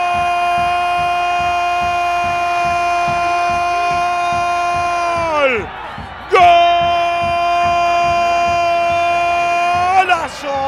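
Football commentator's drawn-out goal cry, a loud, high held 'gooool' on one steady note that drops off about five and a half seconds in, then a second long held note from about six and a half seconds to the end.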